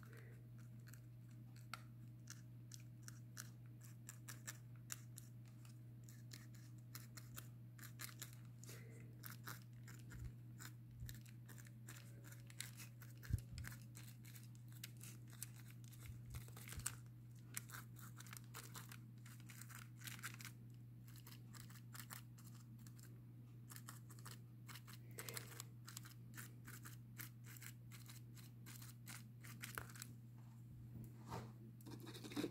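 Faint scratchy ticks and strokes of a small paintbrush dabbing on a paper journal page, over a steady low hum, with one sharper knock a little before halfway.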